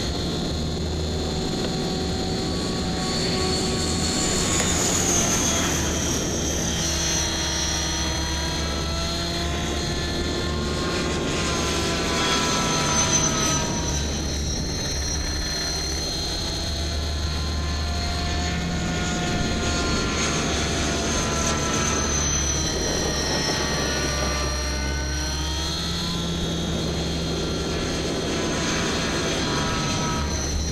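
Align T-Rex 550 electric RC helicopter flying fast passes: a high whine and rotor noise, its pitch sweeping up and down again and again as it comes and goes.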